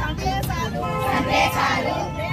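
A group of women reciting a pledge aloud together, following a woman reading it from a sheet. A low rumble runs underneath.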